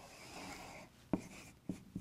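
Dry-erase marker drawn across a whiteboard: a faint rubbing stroke as a line is drawn, then three short taps as the tip meets the board.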